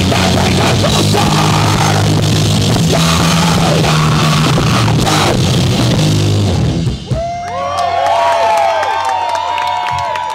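Punk rock band playing live, loud with drum kit, distorted electric guitar and bass, ending abruptly about seven seconds in. The crowd then cheers and whoops, with some clapping.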